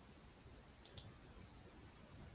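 Two quick computer mouse clicks, one right after the other a little under a second in, against near silence.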